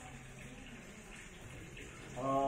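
Faint steady hiss with a low, even hum underneath: background room tone with no distinct event.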